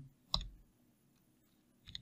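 A single computer keyboard keystroke, one sharp click about a third of a second in, followed by quiet until faint tapping starts near the end.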